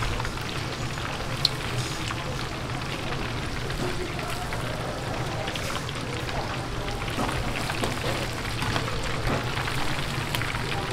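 Battered chicken deep-frying in a vat of hot oil: a steady, dense crackling sizzle over a low steady hum, with a sharp click about a second and a half in.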